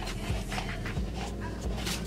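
A plastic water bottle being handled, giving soft crinkling rustles over background music with a slow, soft beat.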